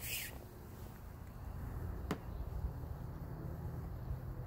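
Quiet, steady low background rumble, with a brief hiss at the start and a single soft click about two seconds in.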